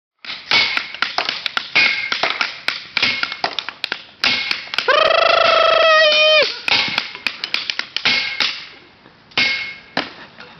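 A stick beating on scrap metal and bricks in a fire pit: rapid, irregular clanks, many with a short metallic ring. About halfway through, a single long held note sounds for about a second and a half, then the banging resumes and thins out near the end.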